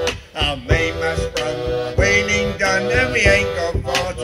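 Sea shanty played by a small folk group: a man singing over held accordion chords, with a bodhrán struck by a tipper in a steady beat of about one and a half strokes a second.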